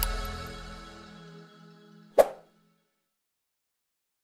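Background music fading out, then a single short pop sound effect a couple of seconds in, louder than the music, timed to an on-screen cursor clicking a Subscribe button. The track then goes silent.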